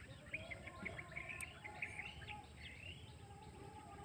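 Small birds chirping: a quick run of short, high chirps over low background noise, tailing off after about two and a half seconds.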